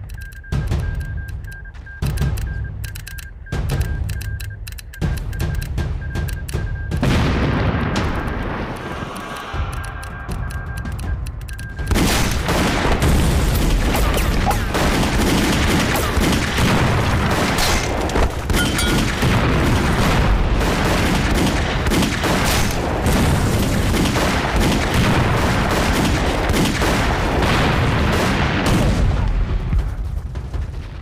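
War-film battle soundtrack: gunfire and explosions under a music score. Scattered shots at first, thickening about twelve seconds in into a dense, continuous barrage of volleys and blasts.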